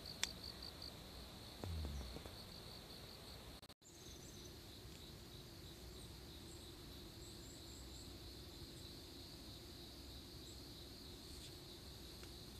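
Faint, steady high-pitched insect trilling, pulsing at first and then continuous, with a sharp click and a low knock from the handheld camera being handled near the start.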